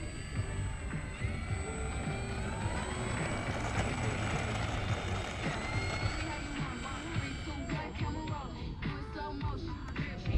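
RC model airplane's motor and propeller spooling up for takeoff, the whine rising in pitch over a few seconds and then holding steady as the plane climbs away.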